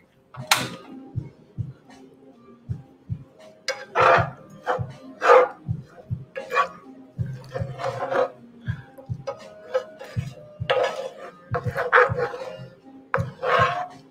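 A spatula scraping and knocking against a stainless steel frying pan in repeated short strokes as rice is stir-fried in sauce, with faint music underneath.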